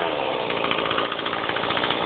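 Chainsaw engine running steadily up in a tree, with a fast, even buzz.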